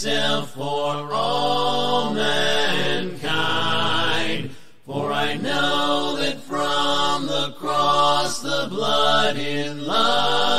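Unaccompanied hymn singing: several voices in a cappella harmony hold long, slow notes in parts, with one brief breath pause just before halfway.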